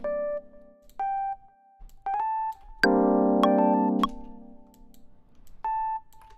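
Electric piano playing a jazzy G minor passage. Short single notes, including a brief rising run, come before a full chord a little under 3 seconds in, which is struck three times on the beat.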